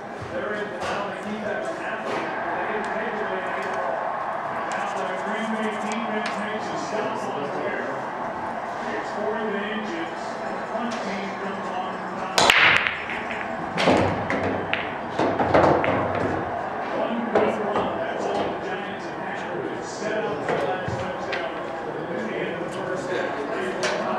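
Break shot in 8-ball on a 7-foot Valley bar table: one sharp crack as the cue ball hits the rack about halfway through, then a few seconds of clicks and knocks as the balls scatter and strike each other and the cushions. Steady background voices run underneath.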